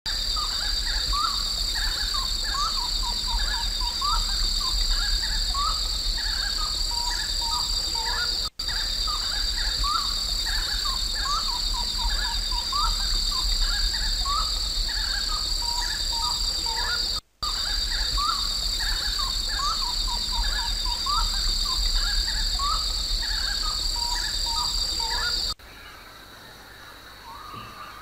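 Dense short rising bird chirps over a steady high-pitched insect drone, with two brief dropouts about every eight and a half seconds, as in a looped recording. Both stop near the end, leaving a quieter stretch.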